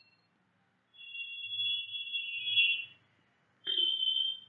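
A steady, high-pitched electronic tone, two close pitches together, starting about a second in and lasting about two seconds, then sounding again briefly near the end, over a faint low hum.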